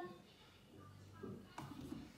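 Quiet room with faint handling noise and a soft click about one and a half seconds in, as a washing machine's detergent drawer is pushed shut by hand.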